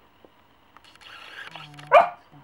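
A small terrier gives one short, loud bark near the end, after about a second of a quieter low, rough sound.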